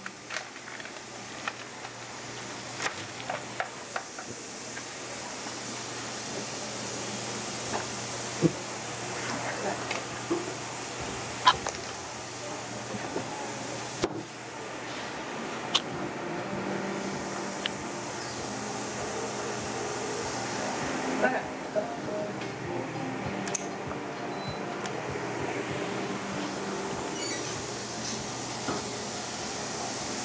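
A steady hiss with scattered light clicks and taps as dental X-ray equipment is handled and positioned, and faint murmured voices.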